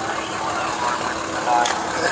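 A vehicle engine idling with a steady hum, with brief muffled voices about three-quarters of the way through.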